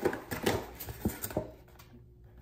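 An injection pen and its cardboard carton being handled: a few light taps and rustles that die down near the end.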